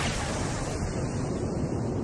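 Steady rushing wind-and-storm noise from the soundtrack of an animated storm scene, without any pitch or beat.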